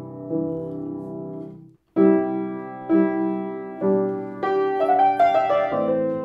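Piano comping with left-hand chords, about one a second, that break off abruptly for a moment just before two seconds in. From about four and a half seconds in, quicker higher right-hand melody notes are played over the chords.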